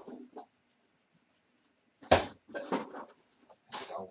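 A dog playing out of sight makes three short, loud noises, starting about two seconds in, the first the loudest.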